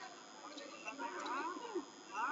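Voices shouting at ringside during a boxing bout, with a call whose pitch slides up and down about a second in.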